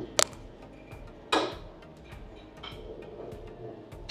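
Quiet lounge background with a sharp click just after the start and a shorter noisy burst about a second later, like a hard object knocking at the buffet.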